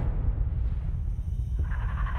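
Film trailer sound design: a low, dense rumble that starts suddenly, with higher steady tones coming in near the end.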